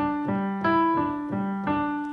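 Piano playing a slow C add2 arpeggio one note at a time, about three notes a second, each note ringing on under the next.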